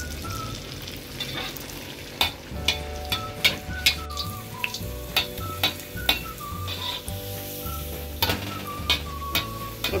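Samosa deep-frying in hot oil: a steady sizzle with sharp pops and crackles from about two seconds in, under soft background music with a simple melody and bass.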